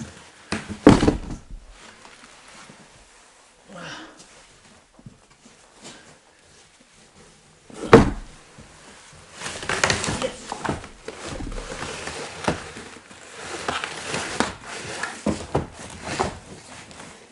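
A person climbing and squeezing through a narrow gap in a wooden wall frame: a heavy thud about a second in and another, the loudest, about eight seconds in, then several seconds of scuffling and scraping of clothes and body against the frame and floor.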